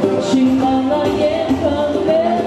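Live pop music: a woman singing sustained notes into a microphone over keyboard accompaniment.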